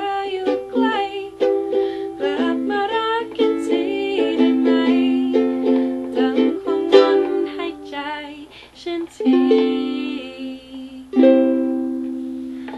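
Ukulele strummed through the closing bars of a song, with a voice singing over the first few seconds. A final chord is struck near the end and left to ring out.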